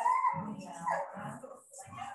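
A dog whimpering over a video call's audio: two short high cries in the first second.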